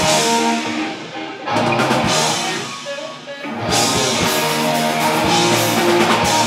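Rock band playing live: distorted electric guitars over a drum kit, with hard full-band accents about one and a half and three and a half seconds in.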